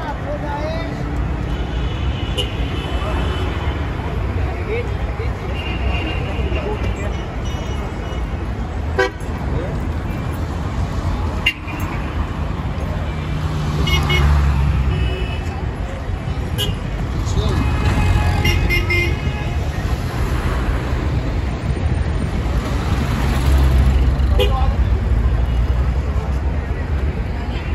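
Busy street traffic: vehicle engines running and car horns tooting in short blasts several times, with a vehicle passing close by about halfway through and again near the end.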